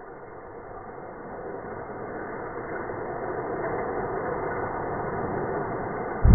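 Die-cast toy car rolling down a long orange plastic track, a rumbling whir that grows steadily louder as it nears the bottom.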